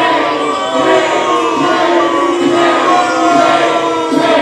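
Many voices chanting together in long held notes, with music underneath.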